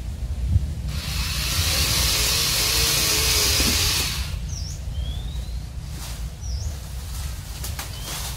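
A loud rushing hiss rises about a second in and stops about four seconds in, over a steady low rumble. Afterwards a bird gives two short chirps with a thin rising whistle just before them.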